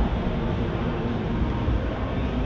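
Steady background din of a large exhibition hall: an even low rumble and hiss of ventilation and crowd noise, with no distinct event.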